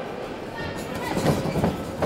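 Echoing sports-hall hubbub of voices, with a few sharp thuds about a second in as two kickboxers close and exchange strikes in the ring.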